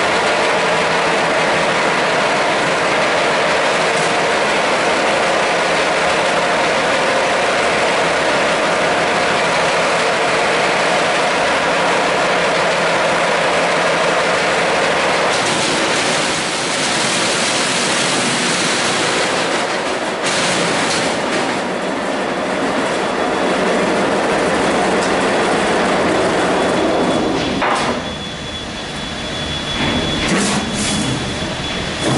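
Double roll crusher running, its two counter-rotating rolls crushing gravel poured in between them to grit under a millimetre: a loud, steady grinding rattle. The sound changes in texture about halfway through and drops briefly near the end.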